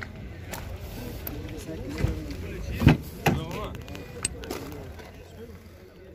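Background chatter of people talking in a crowd, with a few sharp knocks and clicks about two to three seconds in.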